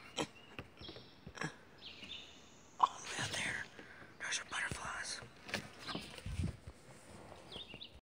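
Short high bird chirps in woodland, mixed with knocks and clicks from a phone being handled, the loudest a sharp click about three seconds in.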